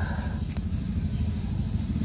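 A low, steady rumble with one sharp click about half a second in.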